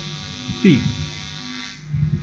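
Steady electrical hum, like mains hum on the recording, under a brief spoken syllable from a man.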